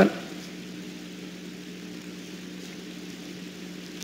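Room tone: a steady low hum with a faint hiss, and no other event.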